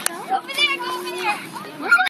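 Children's voices chattering and calling out over one another, with a short click at the very start.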